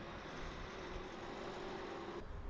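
Faint outdoor street ambience: an even background hiss with a low steady hum, such as distant traffic.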